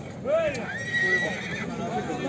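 A horse whinnies once, a high call held for under a second, over the voices of a crowd of men.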